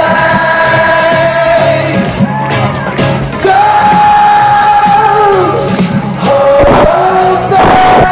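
Loud live music over a concert PA, with long held sung notes over the beat and a crowd shouting and cheering among it.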